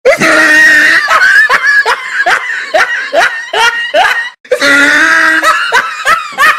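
A loud, shrill laughing sound effect: a run of short 'ha' syllables, each falling in pitch, a few per second, breaking off briefly about four and a half seconds in and then starting again.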